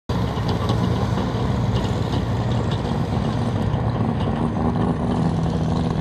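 Diesel engine of a Cub Cadet garden pulling tractor running hard under load during a sled pull. It gives a steady low drone whose pitch holds fairly even.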